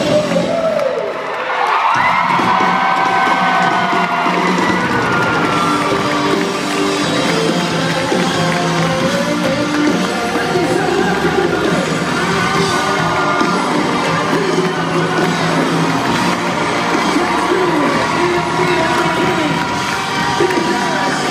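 Live band music heard from among the audience, with crowd cheering and voices singing over it.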